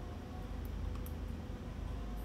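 A few faint clicks from the front-panel keys of a Vexta SG8030J stepper controller being pressed, over a steady low hum.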